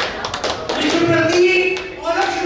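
Scattered hand clapping from a small group, with voices talking over it in the second half.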